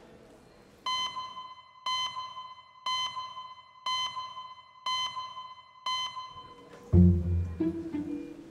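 Six short electronic beeps, one per second, each a clear ringing tone that fades quickly: the clock-tick sound effect of the documentary's on-screen time caption. About seven seconds in, a loud, deep musical note comes in.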